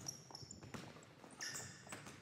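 Faint basketball dribbles and sneaker squeaks on a hardwood gym floor, with a longer high squeak near the end.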